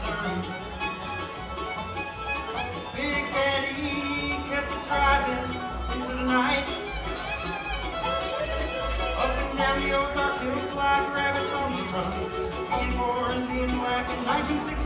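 Live bluegrass band playing an instrumental break, a bowed fiddle leading over banjo, mandolin, acoustic guitar and upright bass.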